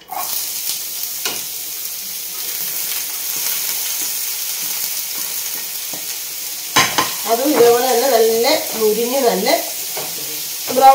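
Food tipped into a hot oiled frying pan sets off loud sizzling that starts suddenly and carries on steadily as it is stirred with a wooden spatula. A couple of sharp knocks come against the pan, about a second in and again near seven seconds.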